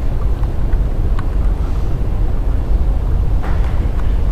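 Steady low rumble with no singing or music, and a faint click about a second in.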